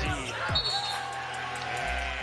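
Background music with a deep, thudding beat, mixed with game audio of a basketball being dribbled on a hardwood court.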